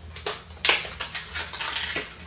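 Sharp clicks and rattles of small hard parts handled by hand, crossbow bolts being readied for loading into a pistol crossbow magazine. The loudest click comes a little past half a second in.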